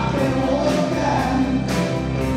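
Live rock band playing, with drums, electric guitar and keyboard under sung vocals, cymbal hits marking a steady beat.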